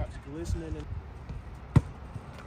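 A basketball bouncing once on pavement, a single sharp thud near the end, with faint talking early on.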